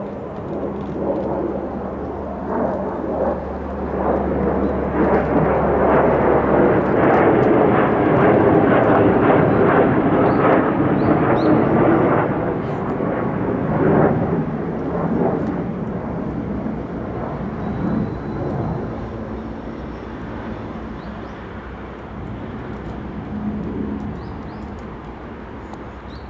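Twin J79 turbojets of an F-4EJ Phantom II jet fighter in flight. The jet noise builds to its loudest around the middle with a falling pitch as the aircraft passes, then fades as it flies away.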